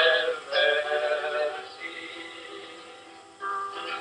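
A sung hymn: a singing voice with musical accompaniment. A phrase starts strongly at the opening and fades away through the middle, and a new phrase begins near the end.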